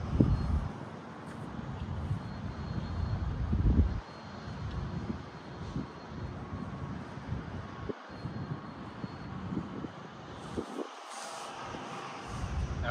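Wind buffeting the microphone: a gusty low rumble that surges and drops in bursts, with a faint thin tone coming and going above it.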